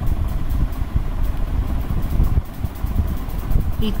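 A steady low rumble of background noise with no speech over it.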